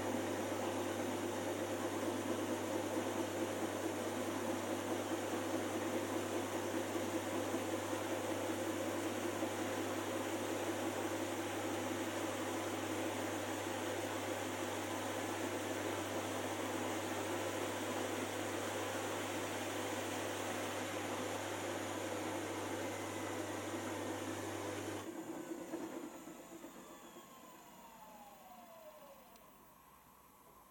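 Miele PW6055 commercial washing machine spinning its drum at 250 rpm at the end of the prewash, a steady mechanical hum. About 25 seconds in the drive cuts out and the drum coasts to a stop with a falling whine as the sound fades away.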